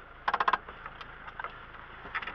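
Passenger door of an off-road vehicle being opened from inside: a quick burst of latch clicks and rattles about a third of a second in, then a few small ticks.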